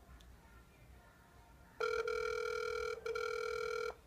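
Ringback tone of an outgoing phone call played through a smartphone's speakerphone: one steady ring about two seconds long, starting a little before halfway through. The call is ringing and has not yet been answered.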